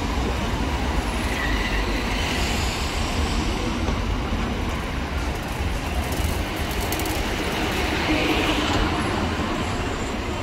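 Road traffic on a busy city street: a steady rumble of passing cars, buses and motorbikes.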